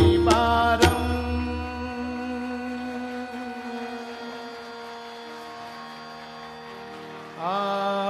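Hindustani classical vocal music: a few sharp tabla strokes and a sung phrase in the first second, then the tanpura drone rings on alone and slowly fades. Near the end a new held sung note begins, sliding up into pitch.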